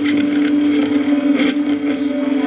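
Live rock band's amplified instruments holding one steady droning note, loud, with a few sharp hits over it.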